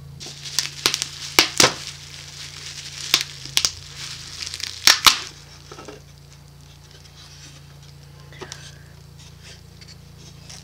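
Packaging crinkling and tearing as small picture frames are unwrapped and handled, with a run of sharp rustles and clicks over the first five seconds, then only a few faint handling sounds.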